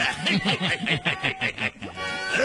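Two male cartoon voices laughing together in a quick run of short laughs, fading out shortly before the end.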